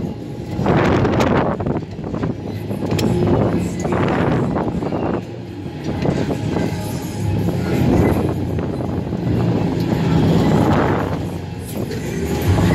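Rushing wind and rumble on the microphone of a rider on a Flipper fairground ride, rising and falling in surges every second or two as the gondola swings and turns, with ride music playing underneath.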